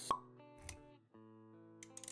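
Intro-animation sound effects over background music: a sharp pop with a quick falling pitch just after the start, a softer low thud a little over half a second later, then held synth-like musical chords coming back in after about a second.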